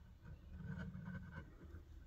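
Faint handling noise as fingers shift their grip and turn a rough stone: soft rubbing with a few small ticks, a little louder around the middle.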